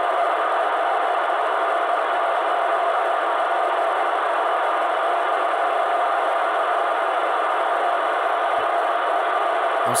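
Steady FM radio static hiss from a TYT TH-9800 transceiver tuned to the ISS downlink on 145.800 MHz, its squelch open on a weak or absent signal between the astronaut's transmissions.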